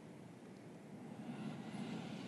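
Faint, steady low rumble of room background noise, with a soft hiss swelling about a second and a half in.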